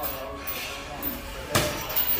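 A single sharp thump about one and a half seconds in, over faint background voices.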